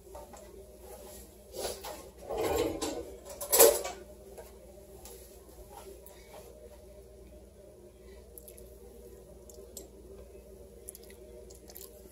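A metal spoon dipped into a pot of soup to take a taste, with a few short soft clinks and scrapes about two to four seconds in, over a faint steady low hum.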